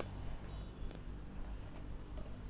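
Quiet room tone with a steady low hum and faint handling of a paperback comic book, with one small tap a little under a second in.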